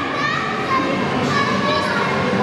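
Many children's voices chattering and calling over one another in an indoor play area, a steady hubbub with no single voice standing out.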